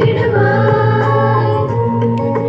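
Choir of young women singing a Christian choir song together, their voices holding long steady notes.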